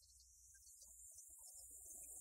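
Near silence: a faint steady low hum and high hiss, with a few scattered faint sounds in the second half.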